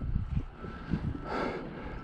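Gusty wind buffeting the microphone in low, uneven rumbles, with a brief hiss about one and a half seconds in.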